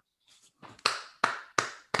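Hands clapping in welcome: a short run of about five sharp claps, roughly three a second, starting about half a second in.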